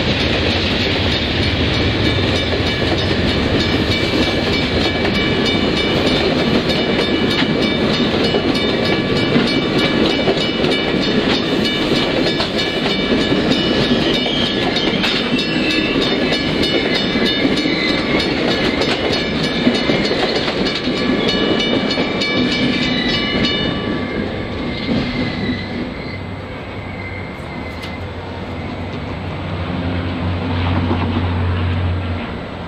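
Amtrak Superliner passenger cars rolling past over a grade crossing, with a steady rumble of wheels on rail. Over it the crossing signal's bell rings with regular strokes, stopping about three-quarters of the way through. The train's sound then dips lower for a few seconds and rises again near the end.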